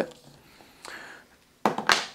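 A quiet stretch, then near the end a couple of sharp handling knocks as a mobile phone is picked up off a tabletop.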